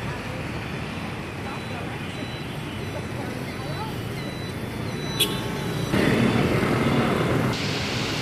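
Outdoor city street ambience: a steady wash of road traffic with faint voices mixed in. A short sharp click just after five seconds, and the traffic noise steps up louder about six seconds in.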